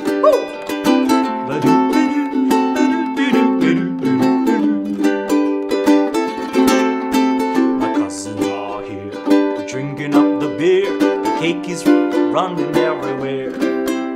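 Ukulele strumming chords in a steady, even rhythm (a C, G, D7 progression), with low bass notes joining about halfway through.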